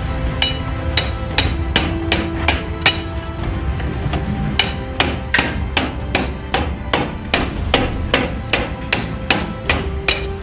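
Repeated metallic knocks from a steel rod striking inside a hollow steel body section of a Land Cruiser, about two to three a second and uneven, each ringing briefly. The strikes are breaking loose and clearing out mud packed into a hidden body cavity over the years.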